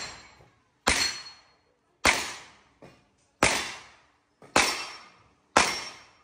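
Pistol shots fired at a slow, even pace, about one a second: five sharp cracks, each with a short echoing tail, with the tail of another shot at the start and two faint knocks between shots.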